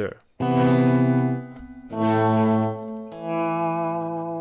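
Left-handed Fender Jag-Stang electric guitar playing three sustained clean notes one after another, the second and third swelling in smoothly as the volume knob is rolled with the picking hand.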